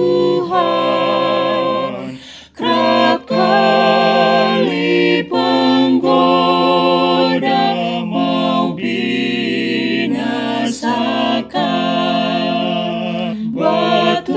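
Four-part a cappella vocal quartet (soprano, alto, tenor and bass) singing a hymn in Indonesian, with vibrato on held notes and a short breath between phrases about two and a half seconds in.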